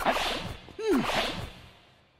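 Two sharp gasping cries from men, at the start and again just under a second later, each a breathy rush with a pitch that drops quickly.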